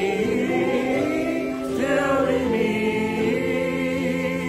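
Voices singing a hymn together in long, wavering held notes, moving to a new note about two seconds in, over a steady sustained accompaniment.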